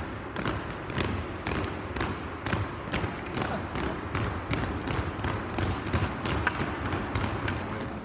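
Group of hockey players skating on rink ice: an irregular run of sharp clicks and knocks, a few a second, from skate blades and stick blades striking the ice, over a low rink hum.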